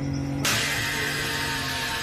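Car engine running at a steady low note as the car rolls slowly past. A loud, even hiss comes in suddenly about half a second in.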